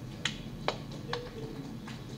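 Four short, sharp clicks about half a second apart, picked up close to a handheld microphone in a pause between a man's sentences.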